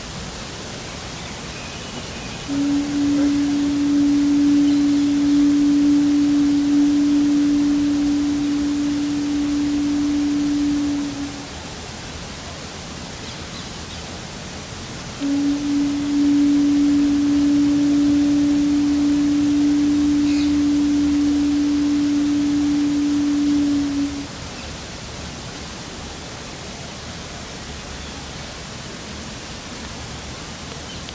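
Pū (conch shell trumpet) blown in two long, steady blasts of one pitch, each about nine seconds, a few seconds apart, over a steady hiss of outdoor background noise.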